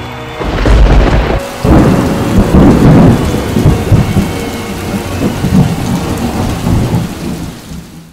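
Deep rolling rumbles over a steady rain-like hiss. The rumble swells strongly about a second and a half in and fades out near the end, with faint steady music tones beneath.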